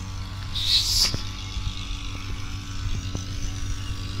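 A steady low motor hum, like an engine running, with a brief hiss about a second in.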